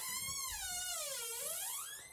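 A high-pitched squeal, one continuous note that slides down in pitch, then climbs back up well above where it began.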